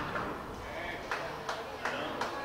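A racquetball bounced on the hardwood court floor before a serve: three sharp knocks in the second half, each under half a second apart, echoing in the enclosed court.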